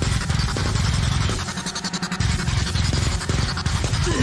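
Deathcore song playing: heavy distorted guitars over fast, pounding drums. About a second and a half in, the bass and kick drop out for under a second while the faster drum hits carry on, then the full band comes back in.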